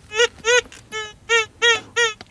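Fisher Gold Bug 2 VLF metal detector giving a quick run of short beeps, about three a second, each one rising and falling in pitch, while it is being ground balanced over heavily mineralized, iron-rich ground that is hard to balance on.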